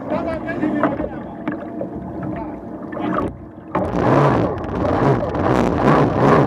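OSY-400 racing boat's two-stroke outboard engine running at low speed over the water, with wind on the microphone. About two-thirds of the way in it dips briefly, then the throttle opens and the engine and the rushing water get much louder as the boat accelerates.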